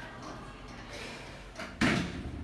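Otis traction elevator's automatic sliding doors closing, ending in a sudden loud clunk near the end as they shut.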